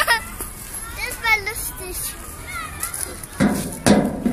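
A young child's high-pitched voice squealing and babbling in short bursts while playing, with two sharp thuds near the end.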